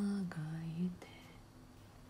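A woman singing softly and breathily: a held note that slides down, then a lower note that ends about a second in, leaving only a faint lingering tone.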